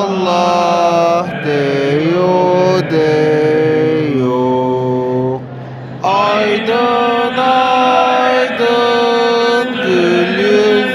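Turkish Islamic devotional hymn (ilahi) sung as a chant: a solo voice holds long, ornamented notes that slide between pitches over a steady low drone. There is a short lull about five and a half seconds in before the next phrase rises in.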